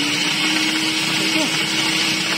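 Electric food processor running steadily, its grating disc shredding carrots pushed down the feed tube.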